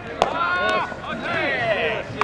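Shouted calls from players on a baseball field, with a single sharp smack just after the start.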